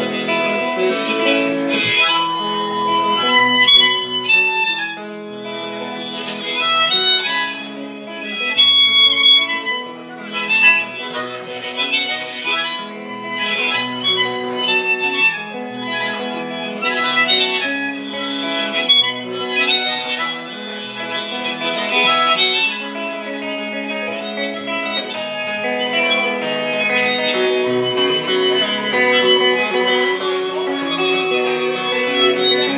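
Harmonica solo played cupped into a vocal microphone, mixing held notes with quick runs, over guitar backing in a country song's instrumental break.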